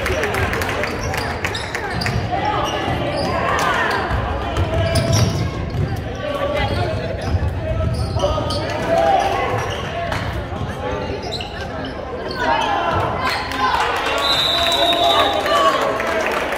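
Basketball dribbled on a hardwood gym floor, with players' and spectators' voices echoing around the gym. Near the end a referee's whistle blows once, for about a second.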